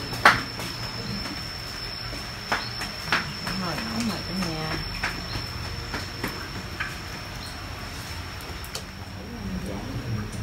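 Kitchen handling sounds: a sharp click just after the start, then scattered clicks and knocks of a knife and an aluminium pot as food is cut and put into it. Faint voices sound in the background, over a steady high-pitched whine.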